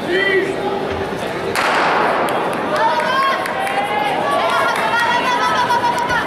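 A starting pistol fires about a second and a half in, with an echo that trails off through the indoor hall. Spectators then shout and cheer for the sprinters.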